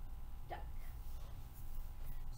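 Steady low room hum, with one brief, short vocal sound about half a second in.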